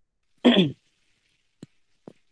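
A person clearing their throat once, short and loud, about half a second in, followed by a faint click.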